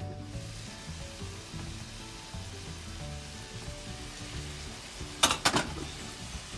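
Diced bottle gourd (upo) and chicken cooking in an uncovered sauté pan, with a steady hiss of sizzling once the glass lid is lifted. Near the end come a few sharp knocks of a spatula against the pan.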